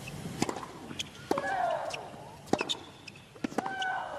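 Tennis ball struck back and forth by racket strings in a baseline rally, sharp hits about once a second. After every second hit a player lets out a long, high shriek.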